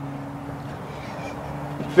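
A steady low mechanical hum with one even pitch, unbroken throughout.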